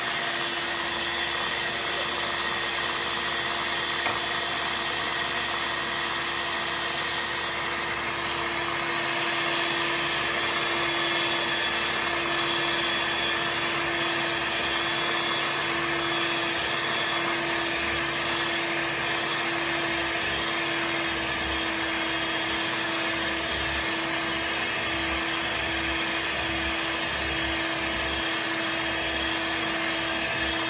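Rival electric stand mixer running steadily, its twin beaters churning thick cake batter in a spinning stainless steel bowl: a constant motor hum and whir.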